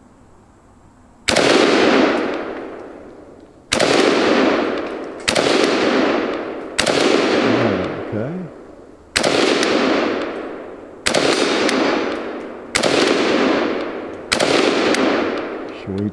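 A Chinese Polytech AKS-762 Spiker, a 7.62×39 semi-automatic AK rifle, fires eight single shots at uneven intervals of about one and a half to two and a half seconds. Each shot trails off in a long echo. The rifle feeds and fires every round without a stoppage.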